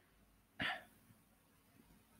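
A single short throat noise from a man, like a hiccup, about half a second in; otherwise near silence.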